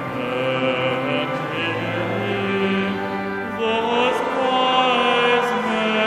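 Congregation singing a carol together to organ accompaniment, voices in several parts over held chords.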